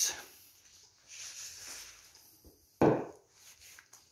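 A frying pan being carried and set down on a wooden dining table: a soft rustle and scrape, then a single short thump about three seconds in as the pan lands.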